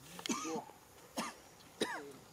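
Macaque calls: three short, harsh calls in quick succession, each rising and then falling in pitch.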